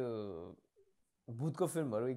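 A man's voice: a drawn-out vocal sound falling in pitch, then about three quarters of a second of silence, then talk resumes.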